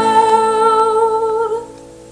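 A woman's voice holds the song's last note with a slight wobble over a lightly strummed acoustic guitar. The note stops about one and a half seconds in, leaving the guitar ringing out quietly.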